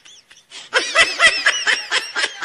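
High-pitched laughter in quick repeated bursts, breaking out loudly about three-quarters of a second in after a brief hush.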